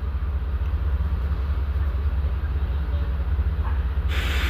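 A steady low rumble with no speech, unchanging throughout.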